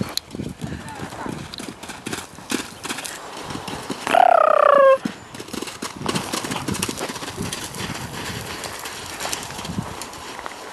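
Pony's hoofbeats on a sand arena as it canters and jumps loose, irregular dull knocks throughout. About four seconds in comes one short call, falling in pitch and lasting under a second.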